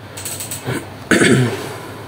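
Ratcheting clicks from a computer mouse scroll wheel as CT slices are scrolled, with a short, loud sound falling in pitch about a second in.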